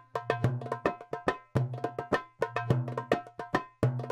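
Middle Eastern-style hand-drum and wood-block rhythm, a fast, repeating pattern of crisp hits with a low bass note recurring every so often.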